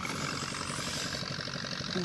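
An engine running steadily at idle, with an even, rapid low pulse.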